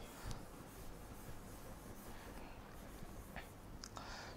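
Faint rubbing and tapping of a pen and hand on an interactive display board while writing, with a few light taps near the start and near the end.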